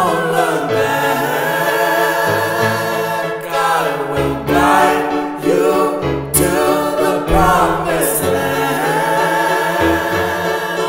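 Song passage of layered, choir-like sung harmonies over a bass line, with no clear words.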